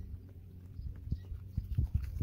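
Footsteps on grass close to a ground-level microphone: a run of soft, irregular low thuds that grows louder in the second half.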